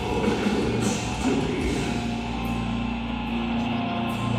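Death metal band playing live: heavily distorted guitars over a drum kit, with a low held chord setting in about halfway through.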